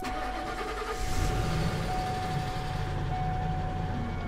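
A pickup truck driving past, with steady engine and tyre noise, under a soft music bed with a held note.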